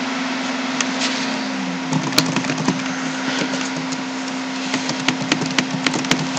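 Computer keyboard being typed on: scattered key clicks in short runs over a steady low hum.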